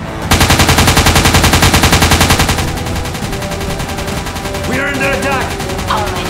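Automatic gunfire: a long rapid burst that starts a fraction of a second in, about eleven shots a second. It is loudest for the first two seconds or so, then carries on fainter through the rest.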